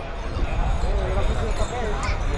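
A man's voice calling out in drawn-out, wavering tones over the murmur of onlookers, with dull low thumps underneath that grow louder about half a second in.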